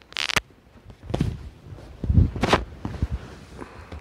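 Handling noise from a phone being moved around by hand: a short rustle at the very start, then low muffled bumps and rustles about one and two seconds in as it brushes against a fleece blanket and a leather couch.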